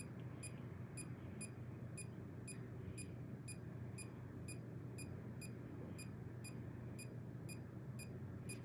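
Handheld EMF meter beeping: short, high beeps about twice a second, the meter's audible alert for a high field reading, over a low steady hum.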